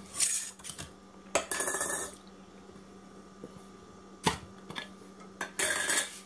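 Metal screw band and lid being worked off a glass mason jar: a few short scraping rasps of metal on the glass threads, a sharp clink past the middle, and another rasp near the end.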